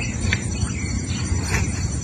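Crickets chirring steadily in a high, even tone over a low steady rumble, with a couple of faint clicks.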